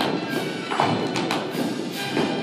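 Music playing while several dancers' heeled character shoes stamp and step on the studio floor, giving a handful of irregular thuds and taps over it.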